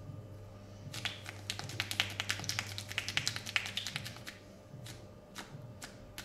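A barber's hands tapping rapidly on a man's head and face in a percussive massage: a quick run of light taps, about nine a second, lasting some three seconds, then a few scattered single taps.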